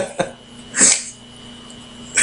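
A person's single short, cough-like burst of breath about a second in, just after the last breath of laughter. Then only a faint steady electrical hum.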